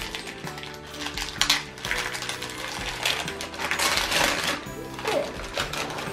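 Wrapping paper crinkling and tearing as a small present is unwrapped, in irregular crackles with louder bursts about a second and a half in and around four seconds, over steady background music.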